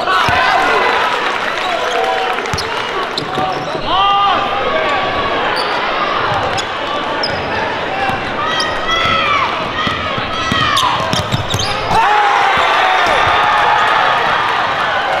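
Live basketball game in a gym: a basketball being dribbled on the hardwood floor, sneakers squeaking, and player and crowd voices, all echoing in the hall.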